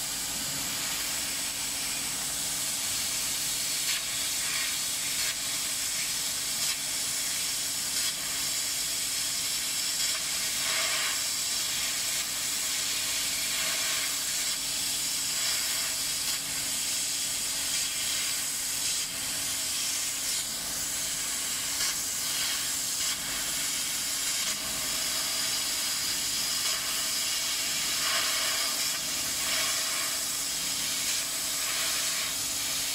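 A CO2 laser engraving machine cutting 3 mm plywood gives off a steady hiss, which fits the air assist blowing through the cutting head, over a low steady hum.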